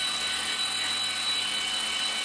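Electric stand mixer running steadily, a constant whirring with a faint high whine over it.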